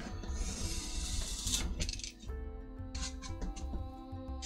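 Craft knife drawn along a steel ruler through a foam sheet, a scratchy hiss lasting about a second and a half, followed by light clicks and clinks as the steel ruler is lifted and set down. Background music plays throughout.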